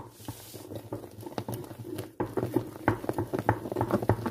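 A wet, sticky pink mass being squished and worked, giving soft irregular squelching clicks that grow busier about halfway through.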